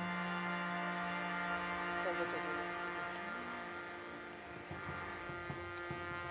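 Steady electrical hum from a stage sound system between music cues, with faint indistinct sounds over it.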